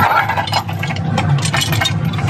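Metal anchor chain clinking and rattling against a grapple anchor as it is handled and laid along the shank, in a run of short sharp clicks, over a steady low engine drone.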